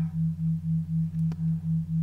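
Low sine tone pulsing evenly about four times a second over a steady lower drone: an isochronic brainwave-entrainment tone laid under a hypnosis track.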